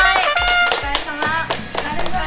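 Several people clapping their hands in scattered claps over steady background music, with women's excited voices at the start.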